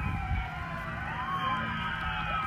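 Several vehicle sirens sounding at once from an approaching parade, their wailing pitches sliding up and down across one another over a low rumble.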